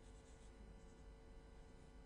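A pen writing on paper: faint scratching strokes, barely above room tone.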